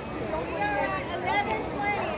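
Several people talking at once near the microphone, their voices overlapping in a continuous chatter.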